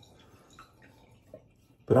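Mostly quiet, with a few faint, brief scrapes of a safety razor being drawn over stubble on the upper lip; a voice starts right at the end.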